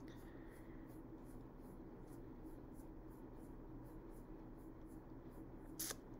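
Quiet room tone in a pause between speech, with a short breath-like sound just before the end.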